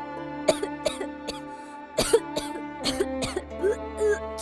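A woman choking and gasping, a scarf tightened around her neck, in a series of short coughing bursts, the loudest about two seconds in, over sustained background music.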